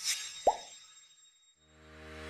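Droplet 'plop' sound effect for a logo animation: one short blip that glides upward in pitch, about half a second in, after the tail of a fading whoosh. A low sustained music chord starts fading in near the end.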